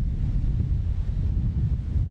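Wind buffeting the microphone as a steady low rumble, over the hiss of surf breaking along the shore.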